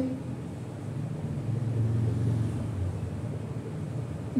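Low rumble of a passing vehicle, swelling about a second in and fading near the end.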